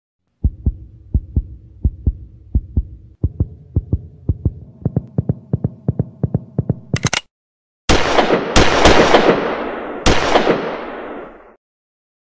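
Heartbeat-like low thumps in pairs that quicken and rise in pitch. Then, after a short break, a few loud gunshot blasts that fade out slowly.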